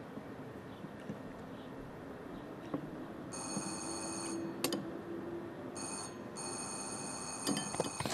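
Apartment door intercom handset ringing with a high electronic ring in separate bursts: one about three seconds in lasting about a second, a short one near six seconds, then a longer one running on.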